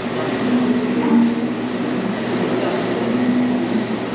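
Steady, loud background din of a busy café interior: a continuous rumbling noise with indistinct voices blurred into it.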